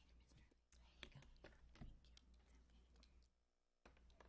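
Near silence: faint clicks and rustles of papers and a phone being handled on a table, over a low steady hum.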